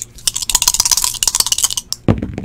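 Two dice rattling fast in cupped hands as they are shaken before a roll: a quick, dense clicking that lasts most of two seconds and stops just before the end.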